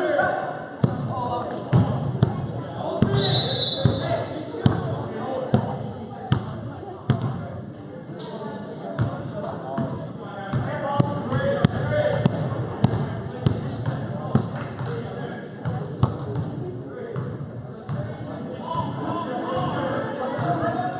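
A basketball bouncing on a hardwood gym floor as it is dribbled up the court, a thump about once a second, under the talk of spectators.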